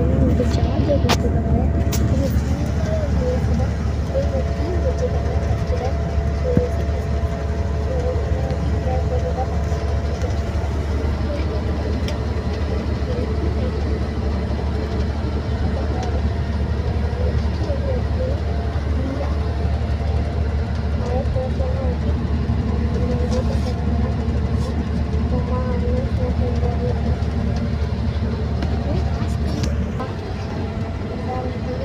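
Steady low rumble of a bus running on the road, heard from inside the passenger cabin, with voices talking in the background.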